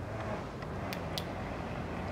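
Steady low background hum with two faint clicks about a second in.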